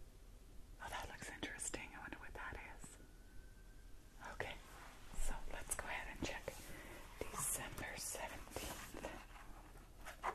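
A woman whispering close to the microphone.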